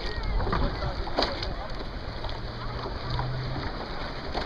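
Shallow seawater lapping and splashing around a microphone held just above the surface, in a steady wash with scattered small splashes. A low steady hum comes in for about a second past the middle.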